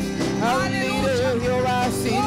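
Live gospel worship music: women's voices singing long notes with a wide vibrato, over electric guitar and keyboard.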